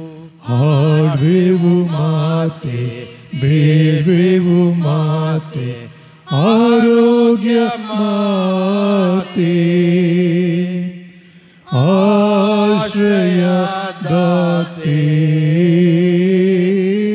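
A solo voice singing a Kannada church hymn unaccompanied, in long held notes with a slight waver and short breaks between phrases.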